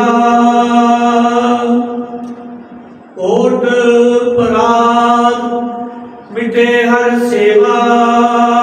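A man's voice chanting Gurbani in slow, sustained melodic recitation, holding long steady notes. Three drawn-out phrases each fade away before the next begins, about three seconds and about six seconds in.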